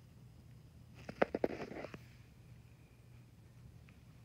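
A quick run of sharp clicks and rustling, under a second long, starting about a second in: taps and handling of the recording device. A faint low hum runs underneath.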